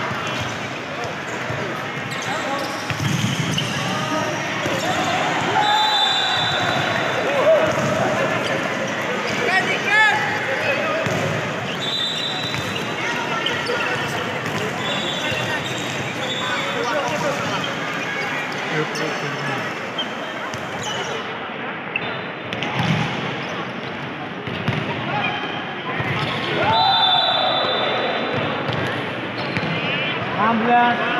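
Indoor volleyball play in a large hall: the ball being struck and bouncing, sneakers squeaking on the court floor and players' voices calling, all echoing in the hall.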